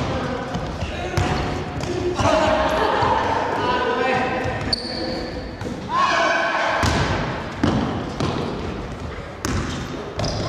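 Basketball bouncing on a wooden gym floor, the sharp knocks echoing in a large hall, amid players' voices calling out during play.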